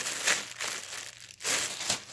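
Plastic poly mailer packages crinkling loudly as they are squeezed and shuffled by hand, in irregular bursts with a short lull a little past halfway.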